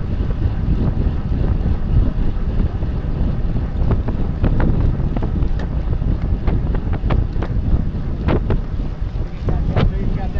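Strong wind rumble on a bicycle-mounted camera's microphone at racing speed, with road noise and scattered sharp clicks and knocks from the bike.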